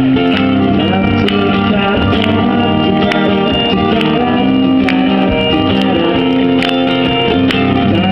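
Live pop song played loud and steady, carried by guitar, with a man singing into a microphone over it.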